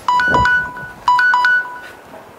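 Electronic ringtone-like chime: a short phrase of clean beeping notes alternating between two pitches, sounding twice about a second apart.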